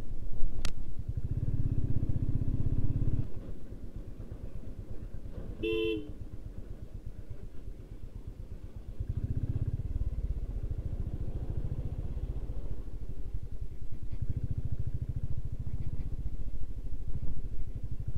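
Motorcycle engine running at riding speed with fine, rapid firing pulses, swelling with the throttle twice. A single short horn toot sounds about six seconds in.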